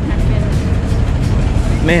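Outdoor city street background noise: a steady low rumble of traffic and air on the microphone while walking.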